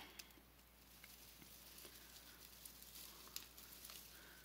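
Near silence, with faint scattered crinkles of a foil tinsel garland being handled.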